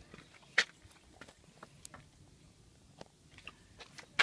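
Faint scattered clicks and light rustling, with one sharper click about half a second in.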